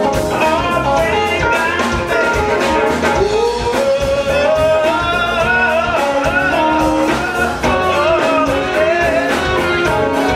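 Live band playing with singing over electric guitar and keyboard; a sung note rises and is held about three to four seconds in.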